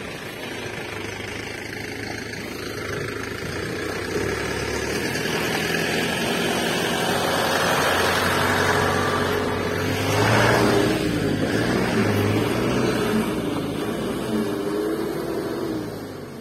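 Truck engine running steadily, growing louder over the first half, with a slightly wavering pitch in the later seconds.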